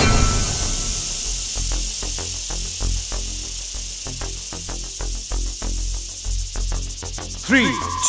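Rest-interval backing track of a workout timer: a steady high, insect-like buzz with rapid ticking over a soft low beat, quieter than the exercise music. A voice starts counting down near the end.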